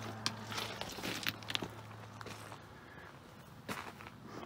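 Footsteps on loose railroad track ballast, a few irregular steps on the stone, over a low steady hum that stops about two and a half seconds in.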